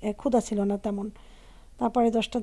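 A woman talking in Bengali, with a short pause after about a second before she goes on.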